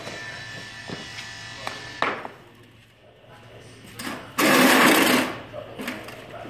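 Handling noise from thick pipe insulation being fitted by hand overhead: a few light knocks, then a loud ripping rasp lasting under a second, about four and a half seconds in.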